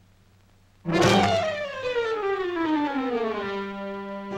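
Orchestral cartoon score: after about a second of silence, a brass instrument comes in with a long falling slide in pitch that levels off near the end, over a held low note. This is the musical cue for a long drop.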